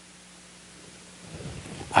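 A pause in speech: steady room hiss with a faint electrical hum through the sound system, and a soft low sound in the last half second.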